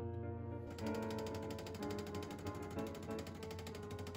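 The buzzing rattle of a Bosch Tassimo pod coffee machine's pump starting up about a second in as it begins to brew, under background music.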